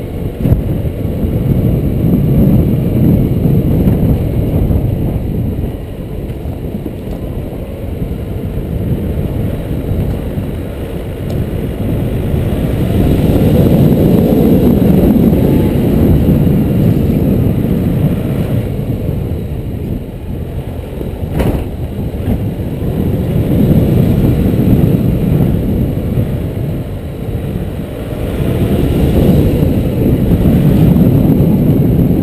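Nissan Navara D22 4x4 driving slowly along a dirt bush track, heard from an externally mounted camera: a low rumble of engine, tyres and wind on the microphone that swells and fades every several seconds. There is a single sharp knock about two-thirds of the way through.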